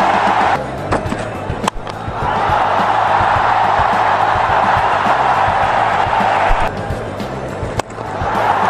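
Large cricket stadium crowd roaring and cheering, celebrating a batsman's hundred. The roar dips twice, about a second in and near the end.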